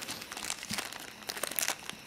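Small clear plastic zip-lock bag crinkling in the fingers as the coin inside it is turned over: a run of irregular light crackles.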